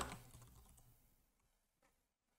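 Faint computer keyboard keystrokes as a word is typed into a search box: a few soft clicks in the first second and one more near the end, otherwise near silence.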